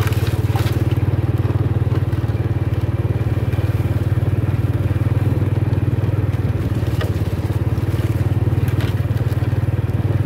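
Small motorcycle engine running steadily at low speed while ridden along a dirt trail, with a few scattered crackles mixed in.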